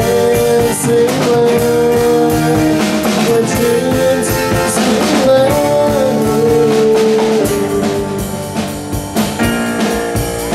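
Live amplified band playing, with drum kit, electric guitars and keyboard over a steady beat and a held, sliding melody line, likely sung. The sound eases off slightly near the end.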